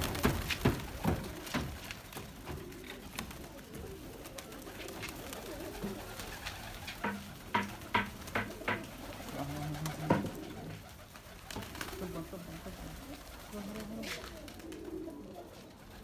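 Domestic pigeons cooing in low, repeated warbles, with sharp wing claps and flapping as birds take off and land. The claps are thickest in the first couple of seconds and again around 7 to 10 seconds in.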